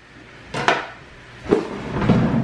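A chef's knife chopping through a yellow squash onto a wooden cutting board with one sharp knock, followed about a second later by a duller thump on the board.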